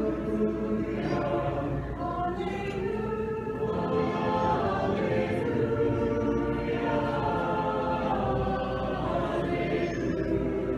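Church choir singing an unaccompanied Orthodox liturgical hymn in several voice parts, with long held notes that move slowly from chord to chord.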